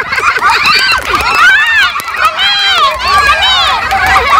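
Several people's voices talking and calling out over one another at once, high-pitched and animated.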